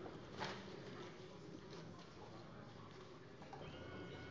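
Quiet hall room tone with a faint low hum, a brief rustle about half a second in, and faint handling sounds as sheets of paper are laid on a wooden lectern.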